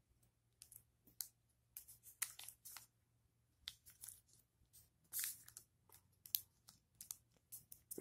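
Square of origami paper being folded and creased by hand: faint, short crinkles and rustles at irregular intervals as a flap is folded down and pressed flat.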